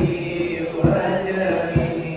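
A group of boys' voices singing a nasyid in a slow, chant-like style, with a low thump keeping an even beat a little faster than once a second.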